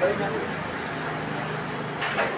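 Indistinct voices of people talking, with a steady low hum underneath.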